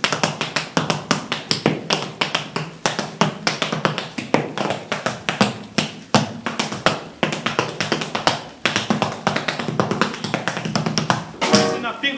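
Tap dancing: a fast, dense run of sharp shoe taps over a musical accompaniment with a steady bass line.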